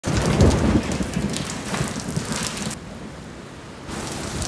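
Heavy rain with rumbling thunder, loudest in the first second. About three seconds in the hiss of the rain drops away suddenly, leaving a quieter low rumble.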